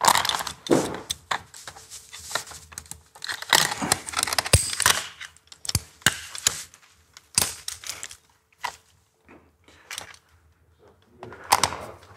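Metal rope-access hardware, carabiners and a descender, clicking and clinking in irregular bursts as it is handled on the rope, with a lull about two-thirds of the way through.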